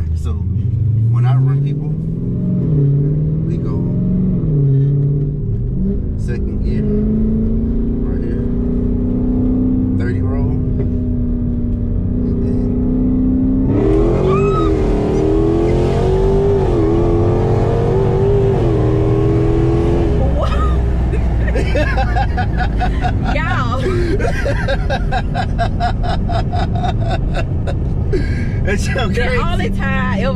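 A Dodge Hellcat's supercharged V8, heard from inside the cabin under hard acceleration. Its pitch climbs and drops several times in the first few seconds as it shifts up through the gears, then it settles into a steady high-speed drone. From about halfway a loud rush of wind and road noise joins it.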